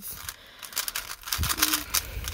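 GAN 12 Maglev magnetic speed cube being turned quickly by hand in its first turns out of the box: a rapid, irregular run of light plastic clicks as the layers snap around.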